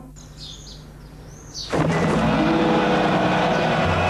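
A few short, high chirping glides over a quiet background, then about 1.7 seconds in a loud advert soundtrack of sustained music notes starts abruptly.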